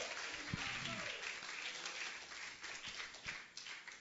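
Church congregation applauding, with faint voices calling out in praise, the clapping gradually dying away toward the end.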